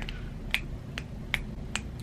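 Four sharp finger snaps, a little under half a second apart, given in place of applause.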